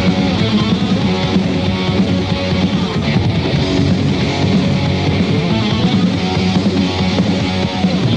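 Heavy metal band playing an instrumental passage, with electric guitars riffing over bass and drums and no vocals.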